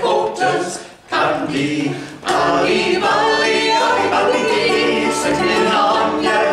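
Small mixed group of men's and a woman's voices singing a folk song together, with short breaks between phrases about a second and two seconds in.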